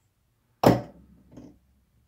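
A sharp knock about half a second in that dies away quickly, then a much fainter knock under a second later: handling knocks as the metal handpieces are moved about.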